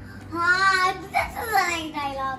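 A young girl singing briefly: a wavering held note about half a second in, then a falling sung glide.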